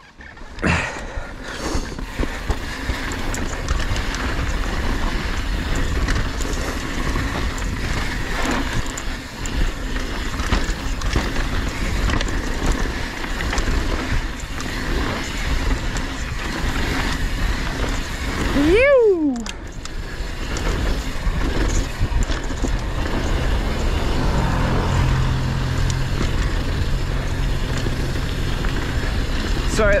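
A mountain bike running down a dirt trail: tyres rolling and rattling over the dirt, with strong wind noise on the action camera's microphone. About nineteen seconds in, a short squeal rises and then falls in pitch.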